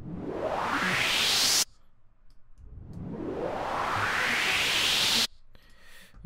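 Synthesized white-noise riser in Serum: a filtered noise sweep rising in pitch and building in loudness, with a random, jumpy noisy texture over the top from chaos-oscillator modulation. It plays twice, and each pass cuts off suddenly.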